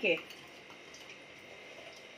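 A woman's voice finishing a word, then faint steady room noise with a thin high whine in the background.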